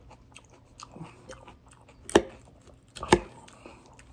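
A person chewing raw salad close to the microphone: wet, crunchy chewing with many small crackles and clicks. Two sharp, much louder clacks stand out about two and three seconds in.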